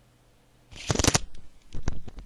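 A sudden burst of rustling about two-thirds of a second in, then scattered sharp clicks: handling noise close to the microphone.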